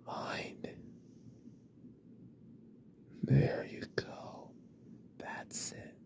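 A man's close-miked breathy whispering in three short bursts: at the start, about three seconds in, and near the end. The middle burst is the loudest, with a low hum of voice in it, and a few small mouth clicks fall between.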